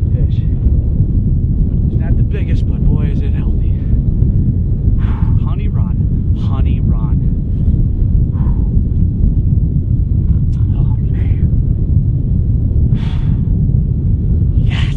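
Steady low rumble of wind buffeting the microphone, with faint voices now and then.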